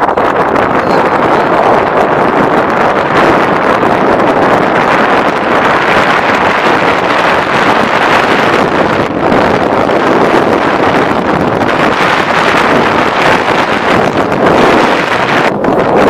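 Steady wind noise on the microphone from riding in a moving vehicle, with road and engine noise underneath.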